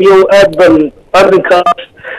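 Speech only: a man talking in short phrases, with a brief pause about a second in.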